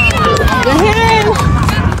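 Several voices shouting and calling out with no clear words, including one long drawn-out shout about a second in.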